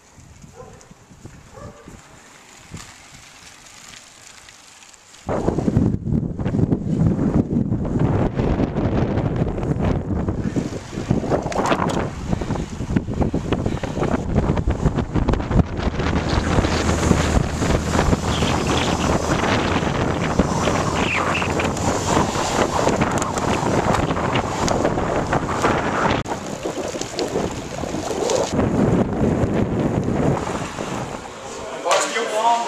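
Wind noise on the microphone of a camera carried on a moving road bike. It starts abruptly about five seconds in after a quieter opening and then runs on loudly, rising and falling.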